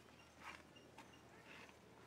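Near silence with a few faint, short scratchy rustles of coarse coir rope fibres being pulled apart by hand.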